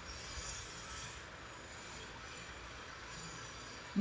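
A pause in a video call: only faint, steady background hiss, with no voices.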